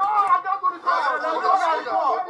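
A screaming match: several people's raised voices shouting over one another in a heated argument.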